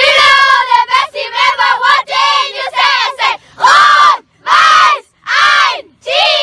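A group of children's voices shouting and chanting together, ending in three long, drawn-out shouts.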